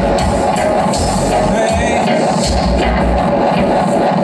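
Live dub music played loud over a club sound system: a deep bass line in long pulsing notes under steady drum hits and cymbals, with no vocals.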